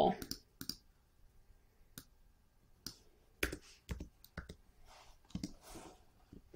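Irregular, scattered clicks of a computer mouse and keyboard, about a dozen short taps spread across a few seconds, as values are entered on a computer.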